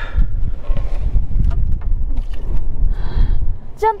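Low, uneven wind rumble on the microphone, with a few light clicks and knocks as a plastic water jerrycan is handled and the cap on the car's coolant tank is opened.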